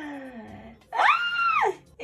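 A woman's voice making a long falling vocal glide, then a loud high-pitched squeal held for over half a second, swooping up at its start and down at its end.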